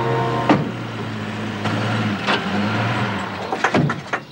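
A car's engine running as it pulls up and stops, then a car door opening and shutting with a few sharp clunks near the end.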